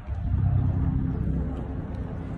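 A steady low rumble of outdoor background noise, louder from about a third of a second in.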